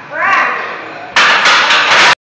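A person's short cry that rises and falls in pitch. About a second in it gives way to a loud, sudden burst of noise that lasts until the recording cuts off.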